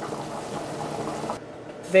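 A pot of ackee and saltfish simmering, a soft steady bubbling hiss that cuts off abruptly about a second and a half in.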